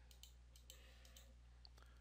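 Near silence: room tone with a steady low hum and several faint computer-mouse clicks, as the carousel's arrow buttons are clicked.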